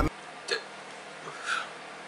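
A rap song stops abruptly as playback is paused, leaving quiet room tone with two short soft sounds, about half a second and a second and a half in, the second the louder.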